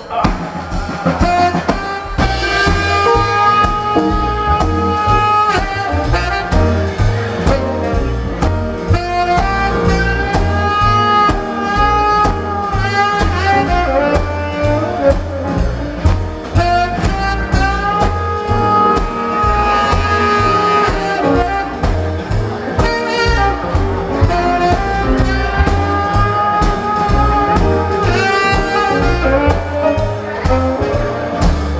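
Live jazz quintet playing the instrumental opening of a blues number: a saxophone plays long melodic phrases over keyboard, double bass and drum kit, with a steady beat.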